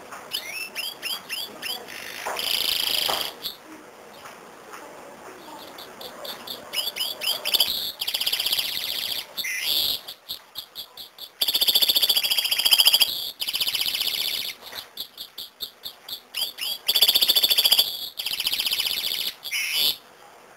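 Caged canary singing: phrases of fast, high trills and rapidly repeated notes, broken by short pauses, with the longest and loudest trills about halfway through and again near the end.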